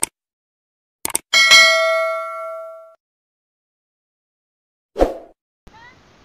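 Subscribe-button animation sound effects: a short pop, two quick mouse clicks about a second in, then a bright notification-bell ding that rings out and fades over about a second and a half. Another short pop comes near the end, followed by faint outdoor noise.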